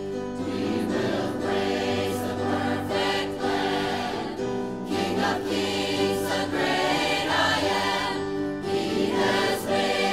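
Mixed church choir of men and women singing a hymn, with sustained notes that change every second or so.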